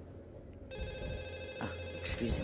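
Desk telephone ringing: one steady ring that starts about a third of the way in and lasts just over a second.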